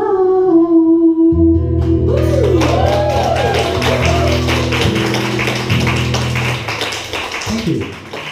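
The end of a live cover played on acoustic guitar with a male singer: a held sung note, then the closing guitar chords ring out. About two seconds in the audience starts clapping, and the clapping carries on as the chords fade.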